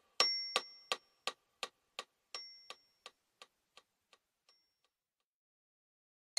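Background music: short, bright ticking notes about three a second, like a clock, growing fainter until they die away about five seconds in.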